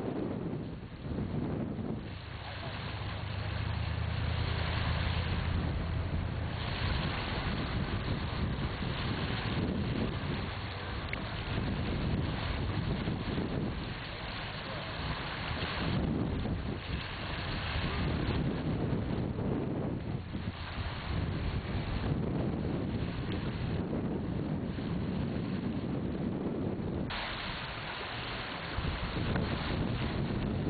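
Strong wind blowing over the microphone: a steady rushing noise that swells and dips in gusts.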